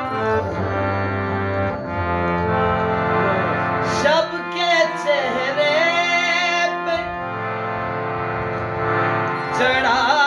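Harmonium playing a melody over sustained reed chords. From about four to seven seconds in, a man's voice sings a long, wavering, ornamented phrase over it.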